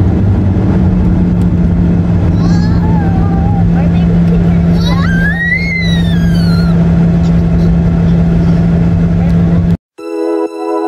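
Car cabin noise while driving on a highway: a steady low drone of road and engine noise. A faint voice rises and falls in pitch briefly about halfway through, and the sound cuts off suddenly just before the end.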